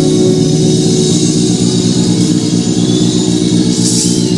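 Live rock band playing loud and even: electric guitar and bass guitar hold sustained notes over fast drumming and cymbals.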